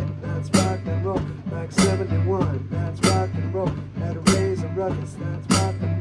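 Instrumental passage of a rock and roll song: electric keyboard played over drums and bass, with a strong hit about every second and a quarter.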